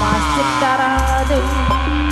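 Live Sundanese gamelan ensemble music with drums: a melody line slides down and then holds a series of steady notes, and a deep bass tone sets in about a second in.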